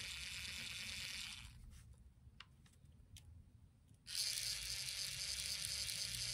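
Cobalt Digital IP point motor whirring as it drives its wire throw arm across, stopping about 1.5 s in. After a quiet gap with a couple of faint clicks, it starts again abruptly about 4 s in and throws the wire back the other way.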